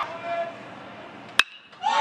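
A single sharp crack of a metal baseball bat hitting a pitched ball, about one and a half seconds in, over faint steady background noise. The hit is a fly ball to right field.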